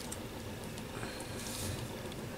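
Light handling of paper cut-outs on a card tag: faint ticks and a brief soft paper rustle a little past halfway.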